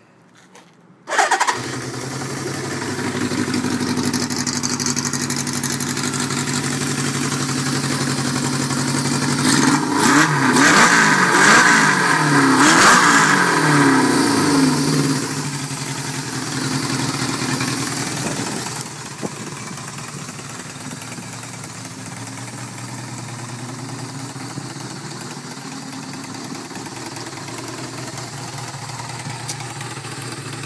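1971 Honda CB500 cafe racer engine catching suddenly about a second in, then running at a fast idle. It is revved several times, with pitch rising and falling, from about a third of the way through, then settles back and drops to a lower steady idle about two-thirds of the way in.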